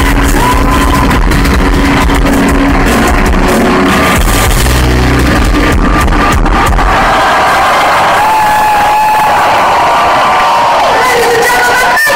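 Live metal band playing loudly, recorded from within the crowd; about seven seconds in the heavy low end of the music stops, and the crowd cheers, whoops and yells.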